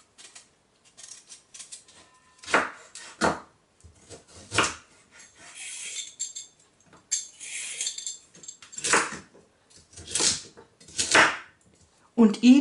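Chef's knife cutting vegetables on an end-grain wooden cutting board: a series of separate, unevenly spaced knocks as the blade goes through celeriac and strikes the board, with softer scraping of peeling and trimming in between.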